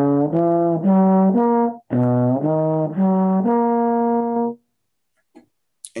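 Solo trombone playing two rising four-note arpeggios of a chord voicing, the second ending on a long held top note.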